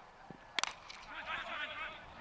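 Cricket bat striking the ball once, a single sharp crack about half a second in, on a shot the batsman has mistimed.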